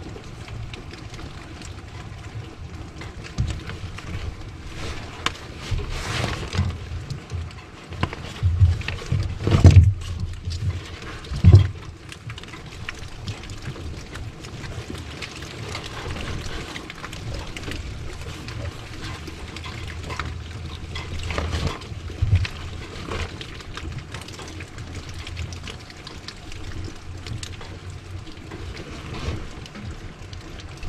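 Hand tools working electrical wiring: clicks and knocks from pliers and wire crimpers as the leads of a new RV water pump are cut, stripped and connected, with two louder thumps about ten and eleven and a half seconds in.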